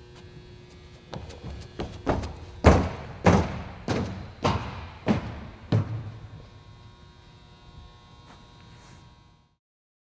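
An athlete's footfalls as he runs and bounds along a track runway: about nine separate thuds over some five seconds, the loudest near the middle, fading after about six seconds.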